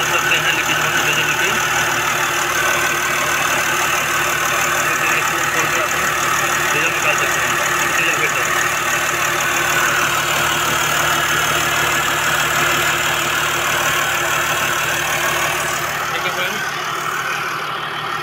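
Mercedes GL 350 CDI's V6 diesel engine idling steadily, heard close up in the engine bay, running after a new fuel filter has been fitted and bled of air. The sound eases slightly near the end.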